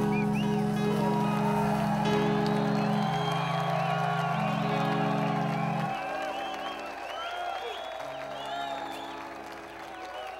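A live reggae band holds a low chord that thins out about six seconds in, while a large audience cheers and whoops throughout.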